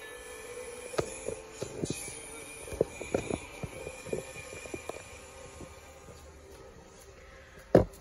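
A scatter of light clicks and knocks over a faint steady background, with one louder knock near the end.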